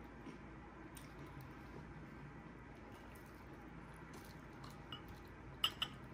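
Faint close-up chewing of a Hot Cheeto-coated fried chicken strip, wet mouth sounds with a few small clicks. Near the end, two sharp taps as the strip is dipped into a glass bowl of sauce.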